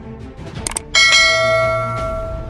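A quick double mouse-click sound effect, then a loud, bright bell chime that rings on and slowly fades, over low background music.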